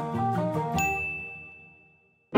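A few short, light melodic notes of music. Then, just under a second in, a single bright ding rings out and fades slowly away.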